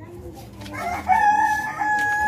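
A rooster crowing: one long call that starts just under a second in, rises and then holds a steady note.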